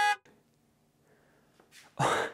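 A short electronic beep, a steady pitched tone, right at the start, lasting a fraction of a second; then near silence.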